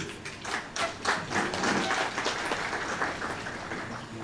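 Audience applauding: many hands clapping together, thinning out and fading over the last second or so.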